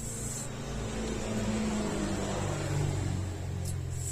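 A motor vehicle's engine drone with a low hum that swells through the middle and eases off near the end, as of a vehicle passing by.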